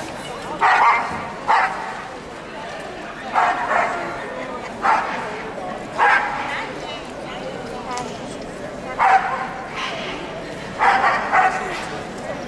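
A dog barking in short, sharp yaps, about ten over the stretch, in uneven groups of one to three, over the steady chatter of a crowded hall.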